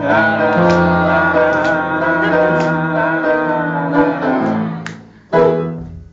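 Live music ending a song: sustained instrumental chords fade out, then one last chord is struck a little past five seconds in and dies away.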